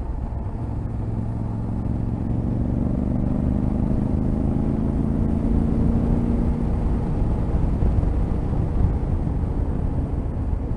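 Yamaha Ténéré 700's parallel-twin engine running as the bike rides along, its pitch climbing slowly over the first six or seven seconds, under a steady rumble of wind and road noise.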